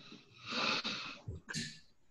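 A breathy hiss lasting about a second, with a short second puff just after, on a video-call microphone.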